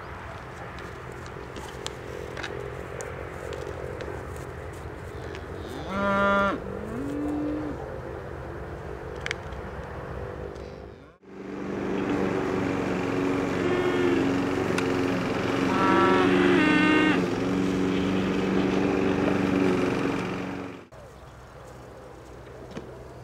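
Scottish Highland cattle mooing: one loud moo about six seconds in, and several more moos later over a steady low drone. The sound cuts out abruptly just after ten seconds and again near the end.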